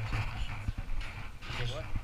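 Camera handling noise: a low rumble and a few sharp knocks as the camera is carried up close and the phones are handled. A man's voice comes in near the end.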